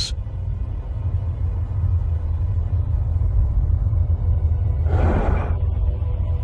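Deep, steady rumble of storm sound effects under a soundtrack, standing for a gas giant's raging tempests. A short rush of gust-like noise comes about five seconds in.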